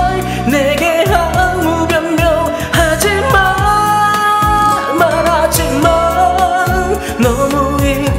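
A man singing a Korean pop ballad line over its karaoke backing track, his voice wavering with vibrato and holding one long note through the middle.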